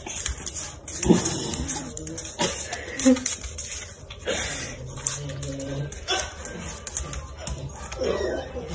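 A puppy making short, irregular vocal sounds.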